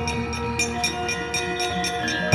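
Javanese gamelan accompaniment playing: several bronze metallophone tones ring on steadily over an even patter of light strikes, about four a second.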